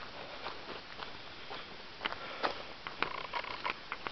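Footsteps on a dirt forest trail, with scattered light clicks over a steady faint hiss; a faint high tone sounds briefly near the end.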